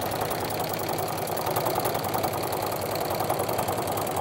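Home sewing machine fitted with a walking foot, running steadily at speed as it stitches a straight quilting line through the layers of a quilt, a fast, even needle rhythm.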